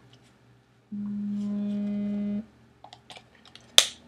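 A steady, flat hum held for about a second and a half, like a closed-mouth "mmm". It is followed by small clicks of plastic being handled and one sharp plastic snap near the end.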